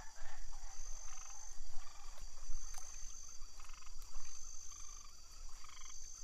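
Frogs croaking in short, repeated pulsed calls, over a steady high-pitched insect trill.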